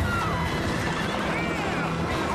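A horse whinnying, with hooves clopping on stone paving.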